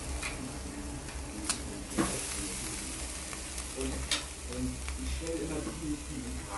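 Marinated pork skewers and chicken sizzling on an electric grill, with a few sharp clicks of metal tongs against the grill rack.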